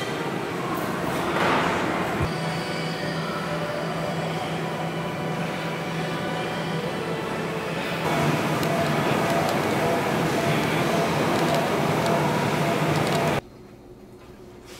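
Steady gym room noise with a low machine hum, louder from about eight seconds in, cutting off abruptly just before the end.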